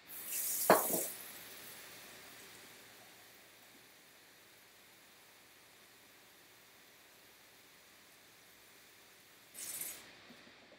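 Mostly near silence: faint room tone. A brief hissing noise comes in the first second and another comes just before the end.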